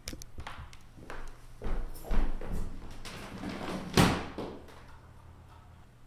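Rummaging and handling noises: a string of knocks and thuds as objects are picked up and moved, the loudest about four seconds in.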